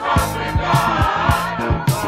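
Gospel choir holding a sung note with vibrato, backed by a band with a steady drum beat and bass guitar.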